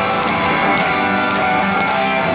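Live rock band playing an instrumental song intro: strummed electric guitars over a drum kit, with a drum or cymbal hit about twice a second.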